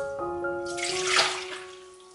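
Pickled radish strips and their liquid poured from a glass bowl into a strainer in a kitchen sink: a splash of pouring liquid that swells about a second in and then fades.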